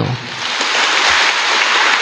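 Audience applauding, swelling over the first half second and then holding steady.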